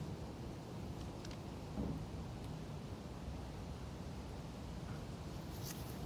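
Quiet outdoor background with a low steady rumble and no distinct event. About two seconds in there is a brief faint vocal sound.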